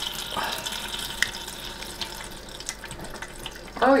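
Hot bacon grease pouring in a thin, steady stream through a paper-towel filter into a stainless steel grease keeper's mesh strainer, with a few small clicks.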